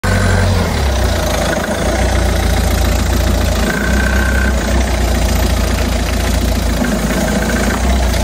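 A car engine running loudly, its low note shifting a few times.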